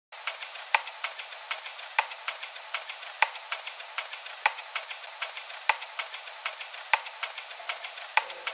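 Vinyl-record surface crackle used as a lo-fi intro effect: a steady high hiss with many small clicks and a louder pop about every second and a quarter.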